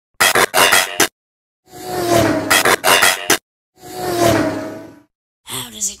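Sound effects of robots transforming and speeding off: a quick run of mechanical clanks, then two swelling whooshes, each with a steady engine-like tone.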